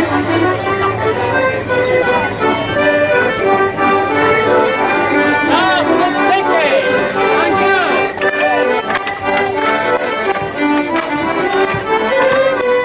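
Fiddles and accordions playing a lively traditional Morris dance tune together in a steady rhythm. About eight seconds in, a regular high jingling joins in time with the tune.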